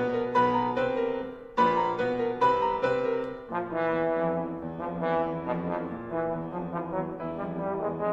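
Tenor trombone and piano playing together in a classical concerto. Strong accented chords in the first half give way, about halfway through, to quicker, busier notes over a held lower line.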